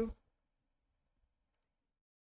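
A single faint computer mouse click about one and a half seconds in, with the room otherwise quiet.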